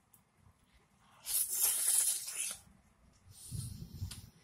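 Close-miked bite into a fresh strawberry dipped in sweetened condensed cream: a wet, crisp tearing sound lasting about a second and a half, then a lower, duller chewing sound near the end.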